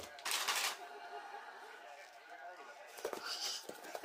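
Fleece costume fabric rustling briefly as it is handled, then a few light clicks near the end.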